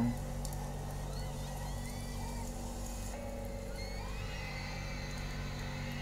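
Quiet, steady low drone with faint thin wavering tones above it, from the intro of a concert broadcast playing softly.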